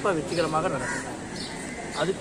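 A bird gives one short call about a second in, after a man's brief speech.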